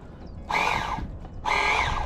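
A crow cawing twice, two harsh calls about half a second long each, a second apart.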